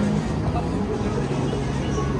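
Busy city street ambience: road traffic running with a steady low hum, mixed with the babble of a crowd of pedestrians.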